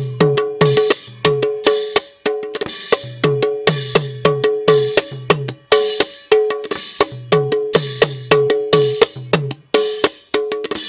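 Percussion playing a fast, steady rhythm that repeats about once a second: ringing pitched metallic strikes over deep drum strokes whose pitch drops after each hit.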